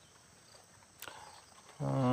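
Near silence broken by a single light metallic knock about halfway through, a metal ladle touching the aluminium kadai. A voice begins near the end.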